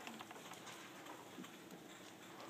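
Faint marker writing on a whiteboard: a dry-erase marker scratching in short, irregular strokes.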